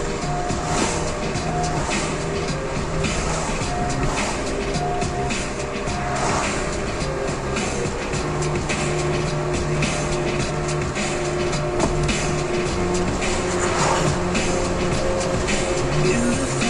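Music playing on the car radio inside a moving car's cabin, over steady road and engine noise.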